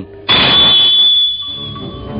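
Radio-drama sound effect of a sword drawn from its sheath: a sudden swish with a high metallic ring that holds and fades over about a second and a half.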